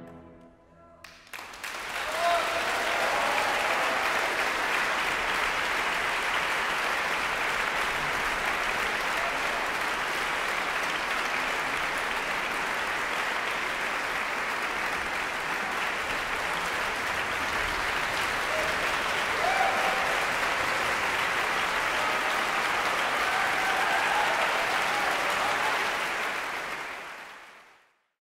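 Concert-hall audience applauding a symphony orchestra. The orchestra's final chord dies away in the first second, then steady, dense applause begins and holds before fading out near the end.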